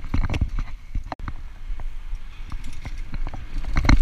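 Mountain bike rolling fast over a rough dirt trail: irregular rattling clicks and knocks from the bike shaking over bumps, over a steady low rumble of tyres and wind, with the clatter densest and loudest near the end.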